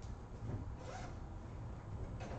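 Faint classroom room noise, a low steady hum with a few short soft rustles, the clearest about one second in.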